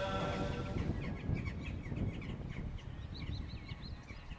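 Small birds chirping outdoors: many short, high calls a few times a second, over a low rumbling background noise. In the first second the tail of a sustained musical chord fades out.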